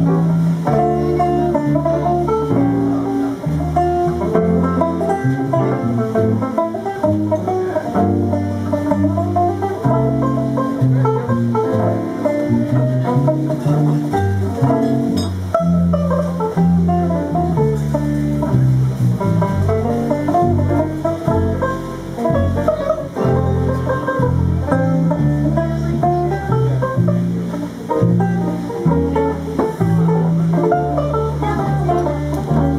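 Banjo playing a slow jazz ballad, its picked chords and melody notes up front, with sustained low notes underneath.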